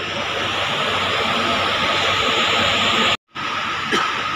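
Steady, even background noise of a large, crowded indoor stadium hall, with no distinct events. It cuts out abruptly for a split second a little after three seconds in.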